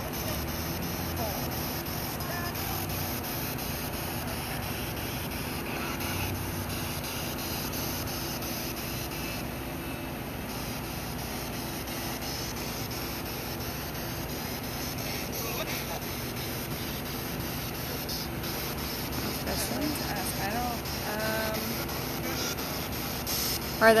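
Steady background hiss with a faint low hum underneath. Quiet voices murmur near the end.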